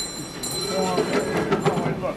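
Live audience in a small theatre: overlapping voices and laughter swell about half a second in and carry on as a steady crowd murmur.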